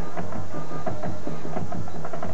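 Drums and percussion playing a beat, the sound of a band's drumline at a high school football game, over a steady low hum.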